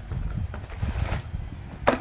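Cardboard box and plastic bag packaging handled while a rifle bipod is unpacked, with a sharp crackle near the end. A low rumble runs underneath.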